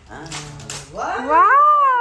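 Paper gift bags rustling as they are pulled open, then a loud, high-pitched drawn-out vocal call that rises and falls over about a second.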